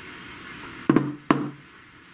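Two sharp knocks about a third of a second apart: a deck of round tarot cards tapped against a wooden tabletop.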